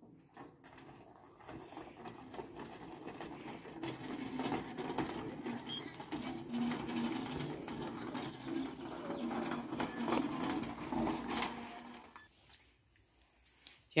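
Footsteps crunching and scraping on a freshly rolled gravel path. The sound starts about half a second in and fades out about two seconds before the end, with short low bird calls mixed in.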